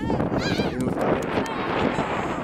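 Children's voices calling out and squealing, with high sliding cries in the first second, over a steady rush of wind on the microphone.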